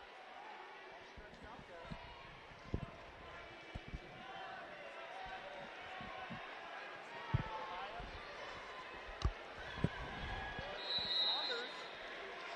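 Wrestlers' bodies and feet thudding on the mat, several dull thumps a second or two apart. Behind them is a steady murmur of arena crowd voices and shouting, with a brief high whistle-like tone near the end.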